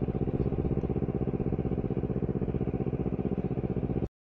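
Honda CBR250RR motorcycle engine running steadily at low revs, with a fast, even pulsing beat, as the bike rolls slowly.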